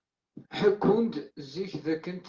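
Speech only: a short moment of dead silence, then a person talking.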